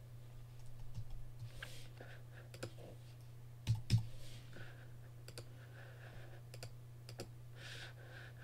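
Computer keyboard key presses and mouse clicks, scattered single clicks with two louder knocks close together a little under four seconds in, over a steady low hum.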